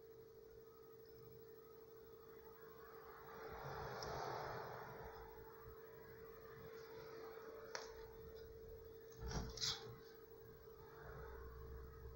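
Quiet handling of wire and tools on a bench: a soft rustle around four seconds in, a sharp click near eight seconds, then two knocks close together a little before ten seconds, over a faint steady hum.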